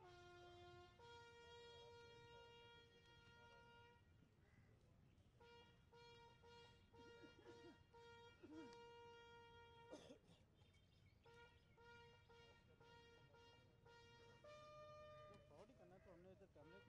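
Faint bugle call of long, slow held notes: a short low note, then a higher note held for several seconds, sounded again twice after short breaks, stepping up to a higher note near the end. A sharp click about ten seconds in.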